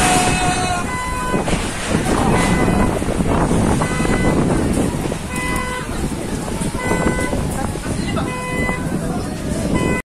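Storm wind blowing across the phone's microphone, rising and falling in gusts. Short, horn-like pitched toots sound again and again in the background.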